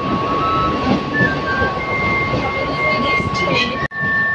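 Inside a Mumbai suburban local train carriage: the steady rumble of the train running, with a constant high whine over it.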